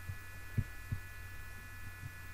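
Steady low electrical hum with a faint high whine from the recording chain. Two soft low thumps come just past the middle.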